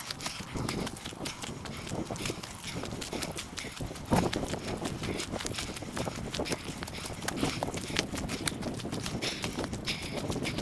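Footsteps on a dry, leaf-littered dirt forest trail, sped up fourfold into a rapid, uneven patter of steps and rustles, with one louder knock about four seconds in.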